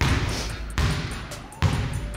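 A basketball dribbled on a hardwood gym floor: three bounces a little under a second apart, each echoing off the hall.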